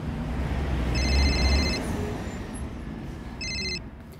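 An electronic telephone rings twice, a longer ring and then a short one, over a rushing whoosh with a deep rumble that swells and then fades.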